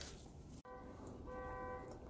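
Quiet background broken by an abrupt cut less than a second in, then a faint voice drawing out 'All…' on one steady pitch.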